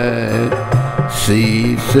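A man singing a Hindi devotional aarti in a slow, melismatic line over a steady low drone. Two short hissing 'sh' sounds come near the end as the next words begin.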